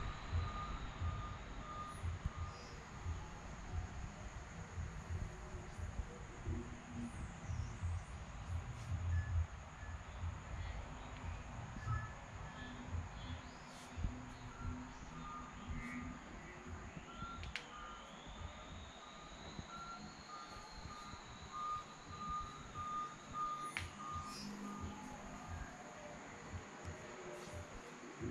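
Faint short beeps at one pitch, coming irregularly, over a low, uneven rumble.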